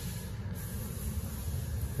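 Steady background noise: a low rumble with a faint hiss over it, and no distinct events.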